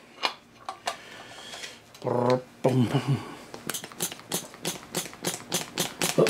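Hand-held pressure pump being worked in quick strokes, clicking steadily about four or five times a second, as it pressurizes an outboard lower-unit gearcase to around 10–12 psi for a seal leak test. A man's short wordless hum comes about a third of the way in.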